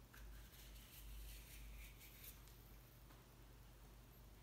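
Faint scraping of a metal peeler drawn along a cucumber's skin during the first couple of seconds, then near silence.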